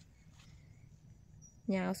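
Faint outdoor background with a thin, high insect chirp, like a cricket, about one and a half seconds in. A woman's voice starts near the end.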